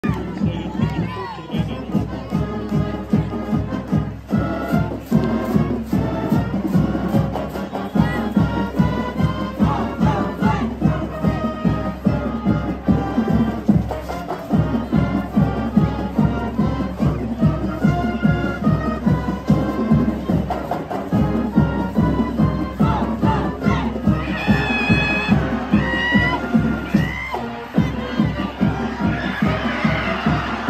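High school marching band playing its fight song, brass and sousaphones over a steady drum beat, with voices shouting and cheering along.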